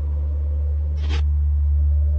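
Deep, steady ambient drone from a film soundtrack, with a short hissing burst about a second in.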